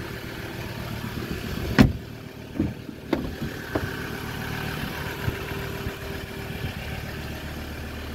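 Ford Ranger 3.2 TDCi's five-cylinder diesel engine idling steadily, with one sharp click just under two seconds in and a few lighter knocks after it.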